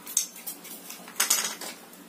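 Metal plate and vessels clinking and knocking as they are handled and picked up: two sharp clinks near the start, then a short run of clatter around the middle.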